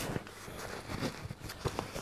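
Green canvas cover of a military mess tin set being handled and pulled off: faint fabric rustling with a few light knocks.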